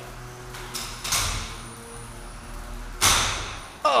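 Impacts from a 12 lb combat robot's spinning weapon biting into the opponent robot. A lighter hit comes about a second in and a loud crash near three seconds, each trailing off.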